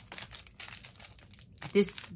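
Small clear plastic bag of sequins crinkling in the fingers, a soft scattered crackle of many tiny clicks.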